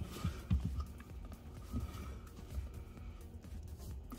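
Quiet background music, with a few faint knocks and rubbing as hands press an aftermarket cover onto a car's brake pedal.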